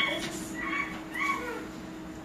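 Two short, faint high-pitched squealing calls: an imitated monkey call in a children's animal-sounds listening track.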